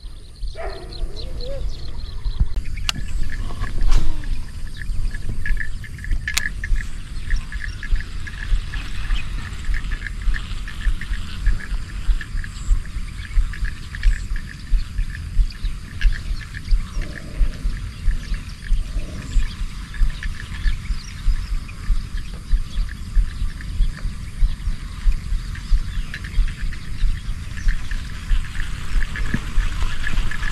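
Shallow water sloshing in a regular rhythm, about two splashes a second, over a steady high chirping of small animals. A few sharp clicks come in the first seconds.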